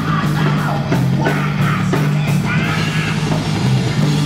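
Live heavy metal band playing: electric guitar, bass guitar and a drum kit with a steady driving beat, under a male vocalist singing into a microphone.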